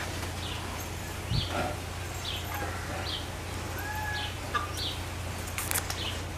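A small bird chirping in the background: short high chirps about once a second, with a couple of brief whistled notes about four seconds in. A low knock about a second and a half in.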